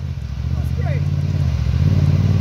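Side-by-side UTV's engine running at low steady revs with the machine perched nose-up on an obstacle, a low rumble that gets a little louder in the second half.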